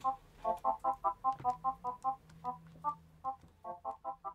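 Yamaha Tenori-On synthesizer sequencer playing a pattern of short electronic notes, about three a second, mostly on the same couple of pitches.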